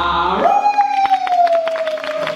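A long wolf-like howl from a costumed performer, swooping up to a held note that slowly falls away, with scattered audience clapping.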